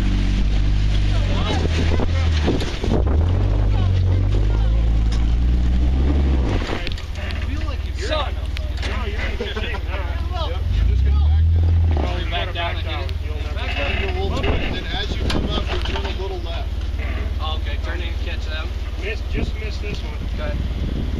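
Jeep engine running at low revs as it crawls up a rock ledge, with a brief rise in revs about eleven seconds in. A steady low rumble lies under it, and voices talk in the second half.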